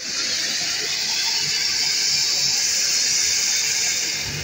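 A ground spark fountain hissing steadily as it throws up a column of sparks.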